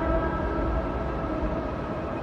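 Soft instrumental background music of long held notes over a low steady rumble. It is the quiet opening of a soundtrack song.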